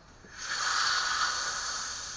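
Pressurised air hissing out of a 1946 Coleman 220C lantern's brass fuel tank as its pressure is released. The hiss starts about half a second in, is strongest around the first second, then slowly fades.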